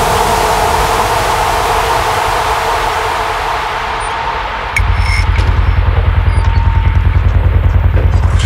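Dark psytrance music: a loud white-noise sweep with held tones, then a little past halfway a heavy, fast-pulsing kick and bassline drops in.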